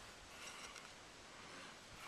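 Near silence, with faint scuffs of a hand digger set into loose soil.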